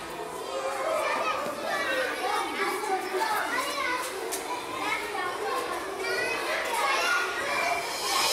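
Many children chattering at once, a steady babble of overlapping young voices.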